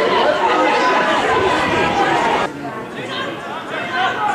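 Overlapping chatter of several voices, no single clear speaker, from the spectators and players around the pitch. It cuts off sharply about two and a half seconds in, leaving quieter talk.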